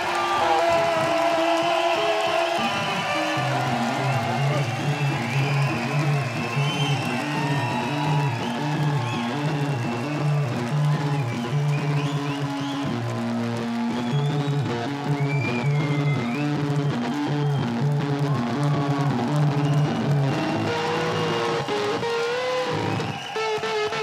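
Live punk band playing an instrumental passage without vocals: electric guitar lines with bent, sliding notes over a pulsing, repeated bass riff that comes in about three seconds in.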